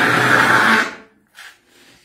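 A man blowing his nose hard into a tissue: one loud blast of about a second that dies away, followed by a short faint snort.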